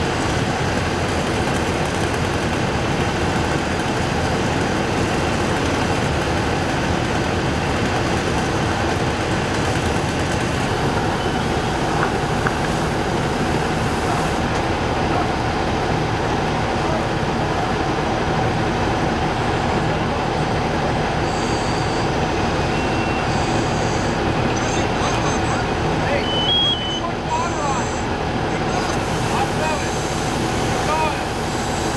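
Fire engine running steadily with its pump working, and a fire hose spraying water, as one constant rumble and rush.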